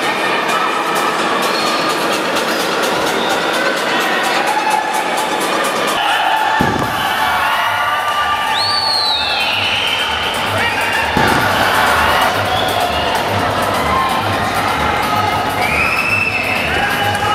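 Arena crowd cheering and shouting during a wrestling match. From about six and a half seconds in, music with a steady low beat comes in under the crowd.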